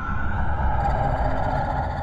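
A steady low rumble under a held mid-pitched tone: a sci-fi soundtrack drone, with no speech over it.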